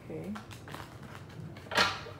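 A deck of tarot cards being shuffled by hand, the cards clicking and slapping together in several quick strokes, with one louder sharp snap near the end.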